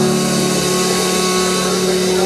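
A rock band's held final chord ringing out: a steady low drone from the amplified instruments under a constant wash of cymbals.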